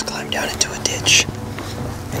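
Hushed whispering voices in short hissy bursts, over a steady low hum.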